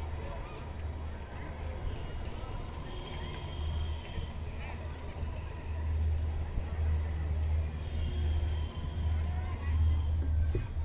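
Low, wavering rumble heard from inside a moving ropeway gondola cabin, growing louder about six seconds in, with faint voices of passengers in the background.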